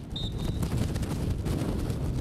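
A short, high referee's whistle blast a fraction of a second in, the signal for a penalty kick to be taken. Steady wind buffets the microphone underneath it.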